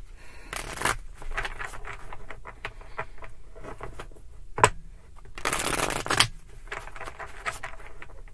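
A tarot deck being shuffled by hand: soft rustles and taps of cards sliding against each other. There are two louder sweeps of cards, a short one just after the start and a longer one past the middle, and a sharp tap shortly before the longer sweep.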